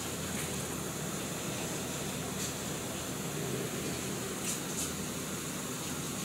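Steady hiss and low hum of a small running machine, with a few faint clicks.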